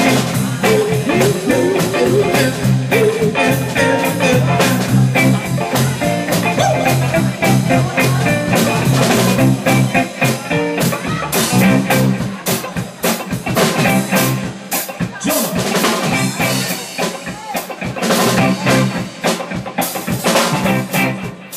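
Live band playing blues-rock with electric guitars, bass guitar and a drum kit driving a busy beat on cymbals and drums. It eases off for a few seconds in the middle, then builds again near the end.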